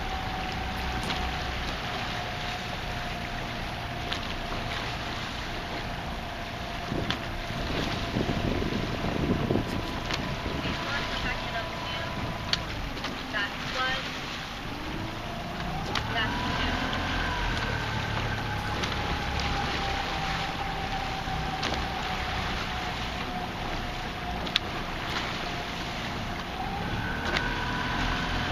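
Outboard motor of a coaching launch running steadily, its pitch rising and falling briefly about halfway through, with wind on the microphone.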